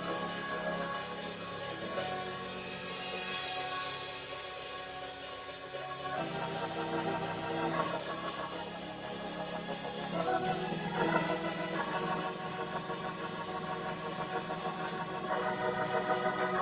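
Organ playing slow, sustained chords, moving to a new chord every few seconds.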